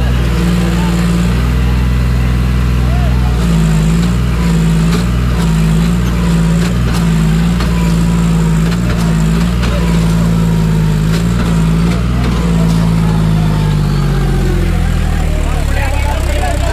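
John Deere 5105 tractor's three-cylinder diesel engine working hard as the 4x4 tractor strains in deep sand. Its note wavers up and down from a few seconds in and drops near the end.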